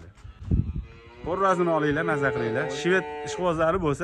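One long moo from cattle, starting a little over a second in and lasting about two seconds.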